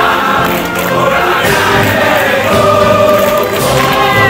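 A group of voices singing together in chorus, with long held notes.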